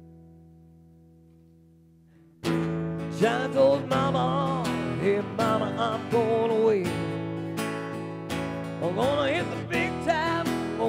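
Acoustic guitar played live: a chord rings and fades away, then about two and a half seconds in the strumming comes back in suddenly and keeps a steady rhythm, with a wavering melody line over it.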